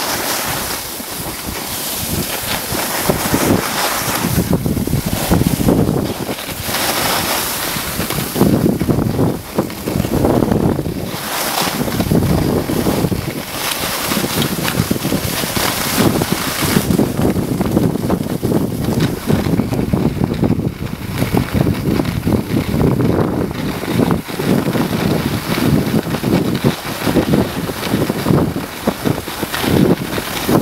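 Wind buffeting the microphone of a camera carried by a moving skier, mixed with the hiss of skis sliding over packed snow; the rushing noise keeps swelling and easing.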